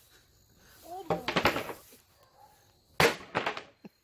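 A sharp single impact about three seconds in, from a long-handled tool swung into old furniture. About a second in there is a short vocal sound with a few light knocks.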